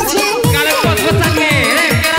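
Loud electronic dance music from a DJ set. A long bass note cuts off right at the start, and a fast run of deep kick drums with falling pitch comes in under a melody line.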